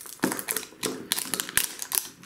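Plastic wrapper layer of a toy surprise ball crinkling and crackling as it is torn and peeled off by hand, in a quick, irregular run of sharp crackles.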